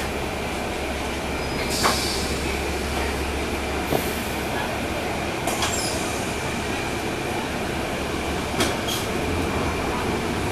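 Cabin ride noise of a 2012 NABI 40-SFW transit bus under way, heard from the rear seats near its Cummins ISL9 diesel engine: a steady engine and road rumble with a thin steady whine. Sharp rattles sound about two, four, five and a half and eight and a half seconds in.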